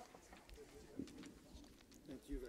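Near silence: faint room tone with faint, muffled voices and a small click about a second in.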